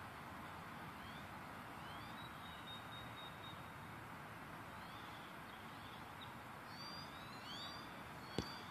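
Faint outdoor ambience: a steady low rush of background noise with scattered short, rising and falling chirping bird calls, a few more near the end.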